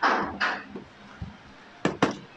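Handling noise: two short scuffs at the start, then a single sharp click near the end, as of something being knocked or snapped against a hard plastic case.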